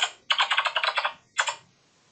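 Typing on a computer keyboard: a quick run of rapid keystrokes, in three clusters with the longest in the middle, as travel details are entered on a booking website.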